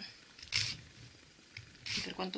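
Nail file scraping across a gel nail in short strokes, two brief hisses a little over a second apart.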